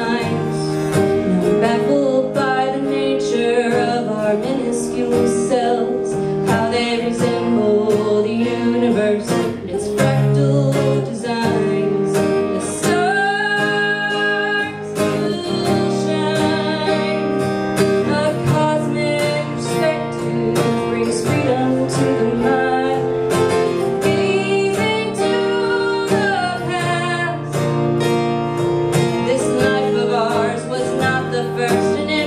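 Solo female singer-songwriter performing live, singing with her own strummed acoustic guitar.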